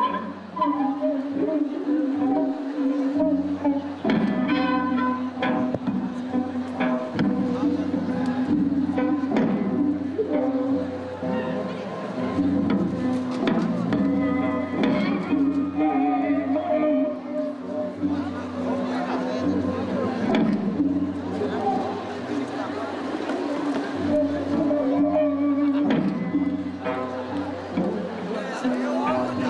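Live Korean traditional salpuri dance accompaniment music in the sinawi style, with bowed strings playing sustained, wavering melodic lines and scattered struck accents.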